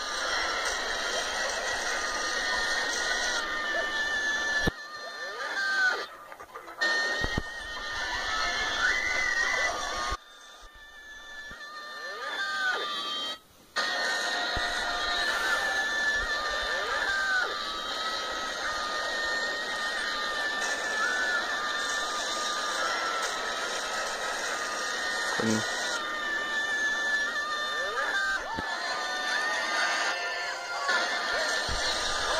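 Television soundtrack music heard through a TV speaker, broken off abruptly several times as the clips change.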